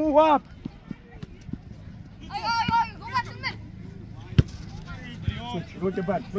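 Shouted calls from players on a soccer pitch, high and unclear, with one sharp thud of a soccer ball being kicked about four and a half seconds in.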